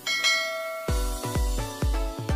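A bell-like chime rings out at the start. About a second in, end-screen music with a heavy bass beat, about two beats a second, takes over.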